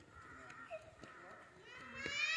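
Faint, indistinct voices of people talking in the distance.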